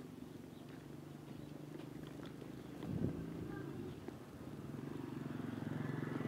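A motorcycle engine running, growing louder toward the end as the bike comes close, with a single thump about three seconds in.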